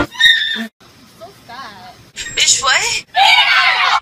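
Women's voices screaming and shrieking: a short loud cry at the start, a brief quieter gap, then high rising shrieks through the second half.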